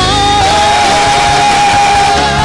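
Live worship music from a band, with one long high note held steady.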